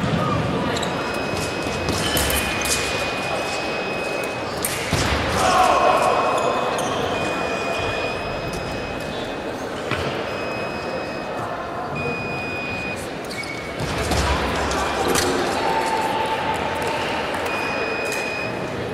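Echoing sports-hall ambience: background chatter of many people, scattered knocks and footfalls on the wooden floor, and repeated short, high-pitched tones.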